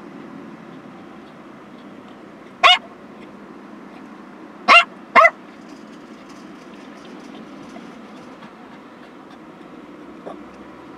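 A dog barks three times, once and then twice in quick succession a couple of seconds later. Under the barks runs the steady hum of a car's cabin while the car stands waiting.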